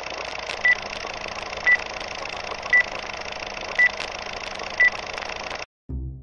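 Old-film projector sound effect: a steady whirring hiss with a short high beep about once a second, five beeps in all, like a film countdown leader. It cuts off suddenly shortly before the end.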